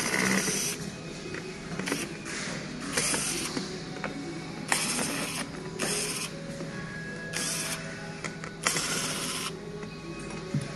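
Electric screwdriver whirring in about seven short bursts as it turns screws on a toy ride-on car's steering bracket.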